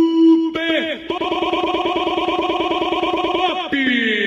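Electronic effects from a sound-system DJ jingle: a held synthesized tone, then a fast-warbling, robotic voice-like tone for about two and a half seconds, ending in a falling pitch glide.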